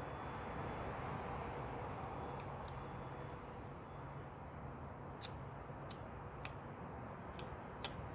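Quiet steady outdoor background noise with a few faint clicks while a woman sips an energy drink from an aluminium can.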